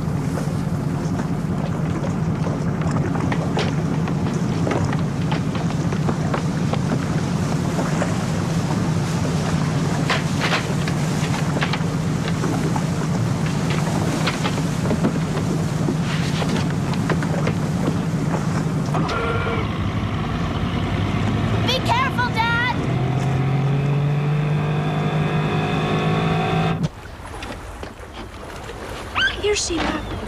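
Motorboat engine running steadily under a haze of water and wind noise, with scattered splashes. About 19 seconds in, the engine sound gives way to wavering pitched sounds and sustained tones, and shortly before the end the sound drops off suddenly.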